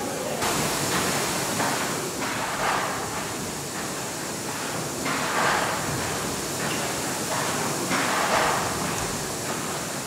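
Hawthorn Davey triple-expansion steam pumping engine running, a steady hiss with rhythmic swells about every one and a half seconds as the crank goes round.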